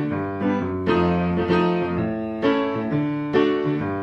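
Piano playing a repeating pattern of struck chords that ring on between strikes.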